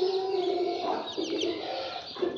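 Young chickens peeping, short high falling chirps, while pecking at a fruit held to the cage mesh. A low, drawn-out bird call runs through the first half and breaks up about a second in.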